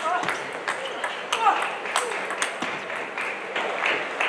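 Table tennis ball hit back and forth by rackets and bouncing on the table during a rally: a string of sharp, irregular clicks, a few each second.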